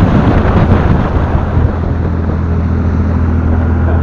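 Wind buffeting the microphone on a motorboat running at speed, giving way about two seconds in to the boat's engine droning with a steady low hum.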